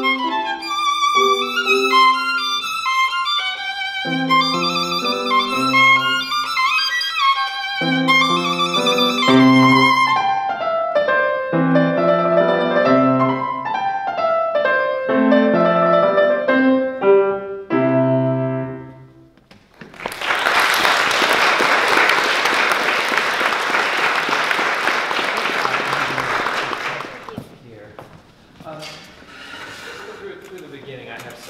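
Solo violin with piano accompaniment playing a classical piece, which ends about two-thirds of the way through; after a short pause, audience applause follows for about seven seconds.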